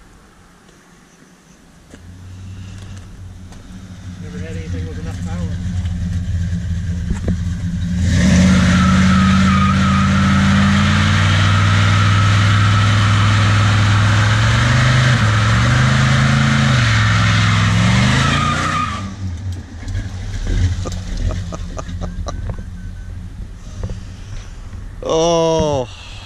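A 1979 Chrysler Cordoba's 360 V8 doing a burnout. The engine builds from about two seconds in. From about eight seconds the rear tyres spin and squeal at high revs for some ten seconds, the revs wavering near the end, before it falls back.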